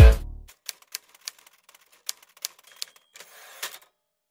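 Electronic dance music cuts off right at the start, then a typewriter sound effect: about a dozen sharp key clacks at uneven intervals, with a brief rasp near the end.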